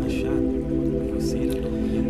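Slow ambient new-age music: sustained, steady pad tones over a fast, even low pulse.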